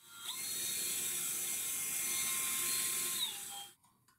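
Electric drill boring a hole into a metal pipe coupling held in a vise, drilling for an M6 thread. The drill motor runs with a steady whine that starts just after the beginning, then dips in pitch and stops shortly before the end.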